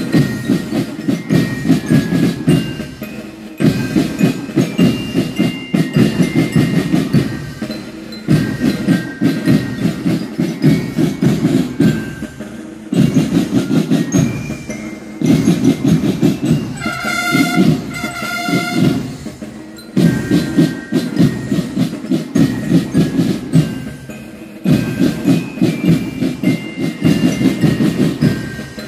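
School marching band playing: snare and bass drums beat out repeating phrases of about four seconds, with bell-like lyre notes ringing above them. About two thirds of the way in, two held horn-like notes sound over the drums.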